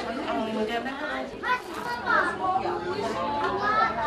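Several women's voices overlapping, crying and talking, with gliding, wailing pitches.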